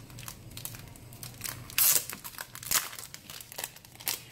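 Clear plastic craft-packaging sleeve crinkling as it is handled and opened, in scattered crackles, with a louder, sharper crackle about halfway through.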